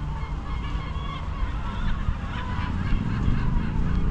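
Birds calling overhead, a run of short, repeated calls over a steady low rumble.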